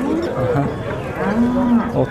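A bull mooing: one long call that starts about half a second in, rises and falls slightly in pitch, and carries on to near the end.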